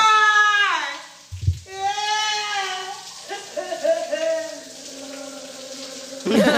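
A woman's voice drawn out in long pitched notes, the first sliding down in pitch, then held notes, over the hiss of running shower water. A short low thump sounds about one and a half seconds in.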